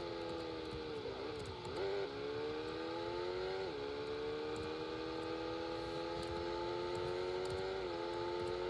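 Simulated car engine sound from a racing video game, played through computer speakers. It is a steady pitched drone whose pitch climbs as the car speeds up and drops sharply twice, near the middle and again near the end as the car shifts up into fourth gear.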